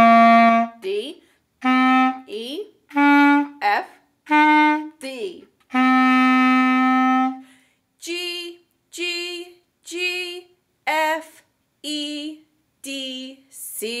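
B♭ clarinet playing slow single notes one at a time with short pauses between, one note held about twice as long as the others (a tied note). Shorter notes with a wavering pitch follow in the second half.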